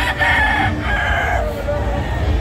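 A gamecock crowing once, a single long call that ends about a second and a half in.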